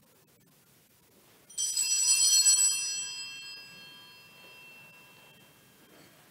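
A small bell rings with a bright, high ring about one and a half seconds in. It is loudest for about a second and then dies away slowly over the next few seconds, a church bell signal that the Mass is starting.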